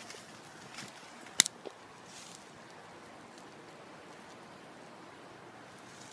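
A single sharp snap about a second and a half in: a lightweight G10 knife blade snap-cut against a plastic-wrapped pork loin, striking across the cling film. A few fainter ticks come just before and after.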